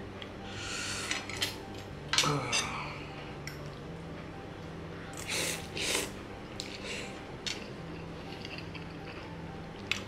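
Slurping curry instant noodles off a fork, with cutlery clinking on a plate; several slurps, the loudest two close together about five to six seconds in.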